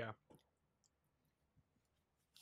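Near silence with a few faint, brief clicks spread through it, after a short spoken 'yeah' at the start.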